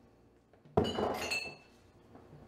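A drinking glass set down hard on a kitchen counter: a sharp knock about three-quarters of a second in, followed by a brief ringing clink of the glass.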